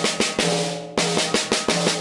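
Drum kit snare and toms played with both sticks striking together ('both' unison strokes rather than flams), in a quick run of hits with a short gap about a second in. The toms ring on a low note between strokes.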